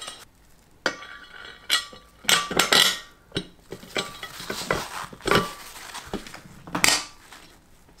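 Small metal bolts clinking and knocking as they are handled and set into the bolt holes of a three-piece wheel rim: a dozen or so irregular clinks, some ringing briefly.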